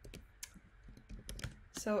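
Computer keyboard keystrokes: a handful of separate, irregularly spaced key taps.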